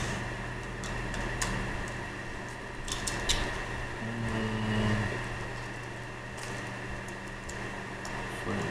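Light scattered clicks and taps of a small Phillips screwdriver working the screws of a plastic collar tag, over a steady room hum.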